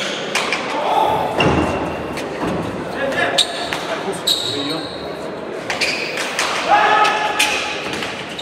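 Basque pelota ball being struck with bare hands and rebounding off the walls and floor of an indoor court in a rally: repeated sharp smacks that ring in the hall. A voice calls out late in the stretch.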